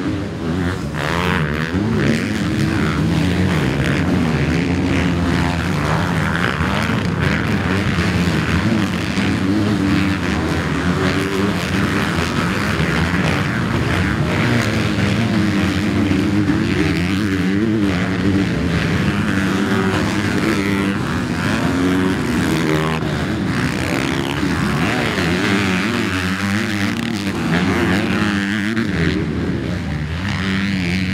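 Motocross bikes on the track, among them a Honda, their engines revving hard. The pitch climbs and drops again and again through the gear changes, with no break throughout.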